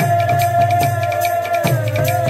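Kirtan music played live: barrel drums give deep strokes at the start and again near the end, and hand cymbals tick quickly and evenly, under one long held note.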